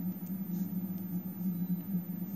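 Steady low background hum, with a few faint light ticks from handling.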